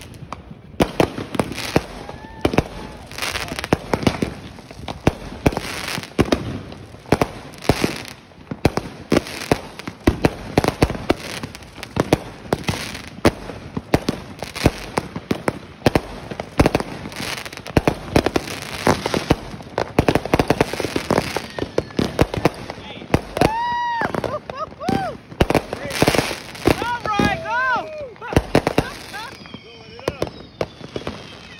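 Aerial fireworks going off in rapid, continuous succession: bangs, pops and crackling one after another. A few rising-and-falling whistling tones come in near the end.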